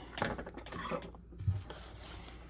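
Paper towels being handled and pressed onto a pool of spilled fountain pen ink on a wooden desk: a quick run of small rustles and clicks at the start, then scattered light handling ticks and a soft thump about one and a half seconds in.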